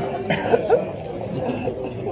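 Audience in a large hall: low talk with a short cough about a third of a second in.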